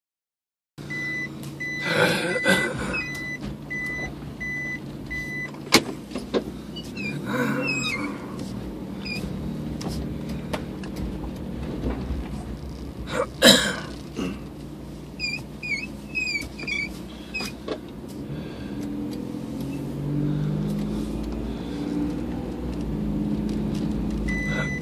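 Car running with its cabin reverse-warning beeper sounding a steady high beep about twice a second for the first few seconds, then the engine and road hum alone, picking up near the end as the car pulls away. A couple of sharp knocks and a few high chirps sound in between.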